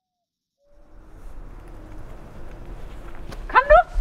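A low, steady outdoor background rumble fades in after a moment of silence. Near the end a dog gives one short whining yelp that rises and falls in pitch, the loudest sound here.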